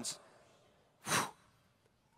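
A man's single short, sharp breath into a handheld microphone about a second in, taken between spoken phrases; the tail of his last word fades out at the very start.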